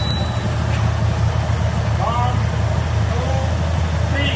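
Motorcycle engines idling steadily, with faint voices in the background.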